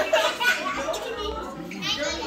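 Several children talking and calling out over one another, with a high rising voice near the end.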